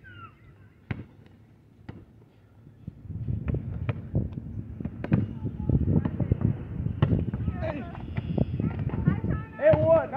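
A basketball bouncing on an asphalt court: a few separate sharp bounces at first, then from about three seconds in, wind rumbling on the microphone over more bounces. A voice comes in near the end.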